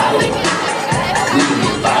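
Club crowd shouting and cheering over loud dance music.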